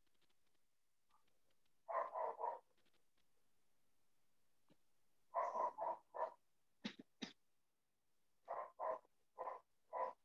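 A dog barking faintly in short runs of three or four barks, heard through a video call, with two sharp clicks about seven seconds in.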